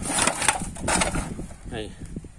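Rustling and knocking of a woven plastic sack of rubbish as it is handled and pushed into a car boot. The noises come thick in the first second, then die away.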